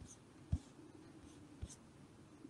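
Two soft computer mouse clicks, each a dull tap with a faint high tick, about half a second apart from the start and again near the end.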